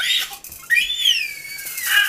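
A toddler's high-pitched squeal: a short squeak at the start, then about a second in, one longer cry that rises and then slides down in pitch.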